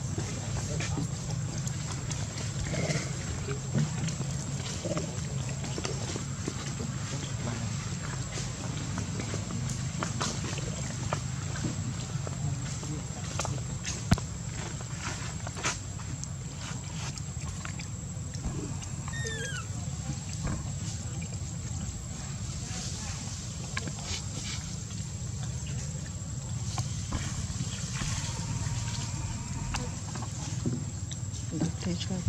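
Outdoor ambience with a steady low rumble and scattered small clicks. One sharp click stands out about halfway through, and a short high call with a falling pitch comes a few seconds later.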